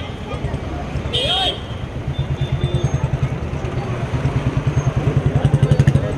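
A vehicle engine running close by with a rapid low throb that grows louder over the last few seconds. Voices call out, and a brief shrill tone sounds about a second in.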